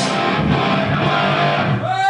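Electric guitar played live through a stage amplifier, sounding continuously.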